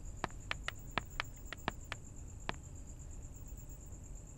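A cricket chirring steadily in the background, with a string of light clicks during the first two and a half seconds from footsteps on a hard tiled floor.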